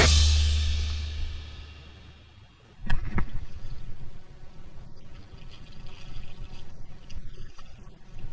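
A rock music chord dies away over the first two seconds or so. Then, about three seconds in, water splashes and churns at the surface by the bank as a hooked pike thrashes on the line.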